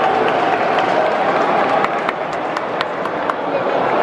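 Football stadium crowd: a steady hubbub of many voices talking at once, with a few sharp claps in the second half.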